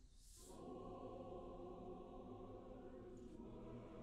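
Large mixed chorus singing softly in long held chords, with brief hisses of sibilant consonants just after the start and again near the end.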